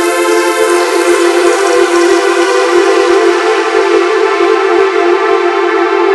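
A loud, sustained synthesizer drone: a held chord of many steady tones that does not change in pitch, part of the intro music.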